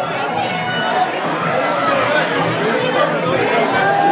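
Crowd chatter: many voices talking over one another, with no music playing.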